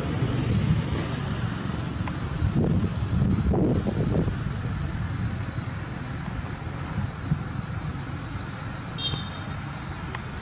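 Steady low outdoor rumble, with a brief high chirp about nine seconds in.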